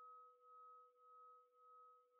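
Near silence, with a faint steady ringing tone and soft pulses a little more than half a second apart.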